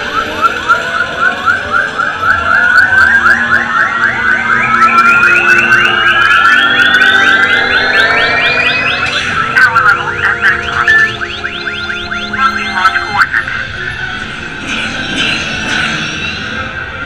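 Ride soundtrack played through the dark: a fast-pulsing electronic tone climbing steadily in pitch for about nine seconds, then breaking into held synth tones and music.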